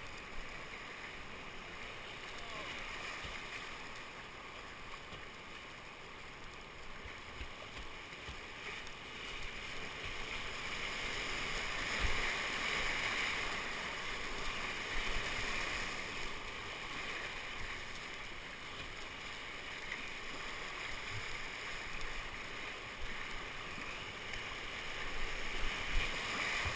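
Whitewater rushing around a kayak as it runs a river rapid, heard close to the water from the bow. The rush grows louder about halfway through as the boat enters rougher water, and again near the end, with a few dull knocks along the way.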